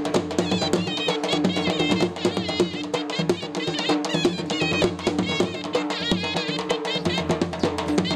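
Traditional folk music: rapid, continuous drumming with a high, wavering melody line over it.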